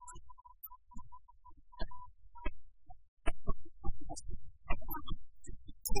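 Sanxian plucked in a sparse instrumental passage between sung lines of a Suzhou tanci ballad: single notes a little apart at first, coming thicker from about three seconds in.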